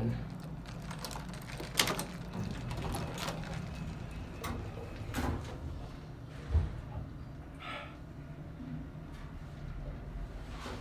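1972 Otis traction elevator: the car doors slide shut and close with a sharp clunk about two seconds in. A low steady hum runs under it, and a single low thump comes partway through as the car starts moving down.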